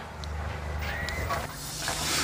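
A steady low engine rumble from a small excavator, with shovels scraping and digging through soft sand.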